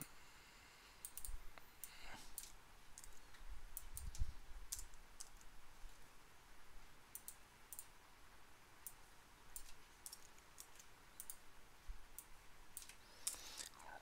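Faint, scattered clicks of a computer keyboard and mouse while code is edited, with a soft low bump about four seconds in.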